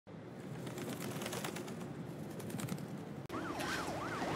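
Ambulance siren wailing, its pitch sweeping up and down about twice a second, cutting in suddenly near the end. Before it there are faint bird calls.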